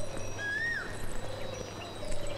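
Outdoor birdsong ambience: a single short whistled bird note that rises and then falls about half a second in, over faint thin high chirping.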